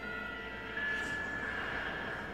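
Steady rumbling sound effect from an anime soundtrack, with faint sustained high tones.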